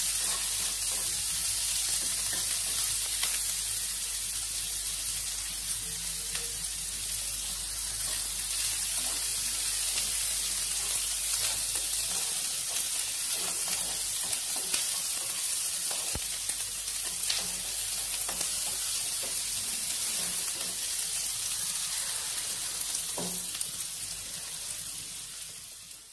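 Sliced onions, garlic, curry leaves and green chillies sizzling steadily in hot oil in a nonstick pan, with a spatula stirring them and now and then tapping or scraping the pan.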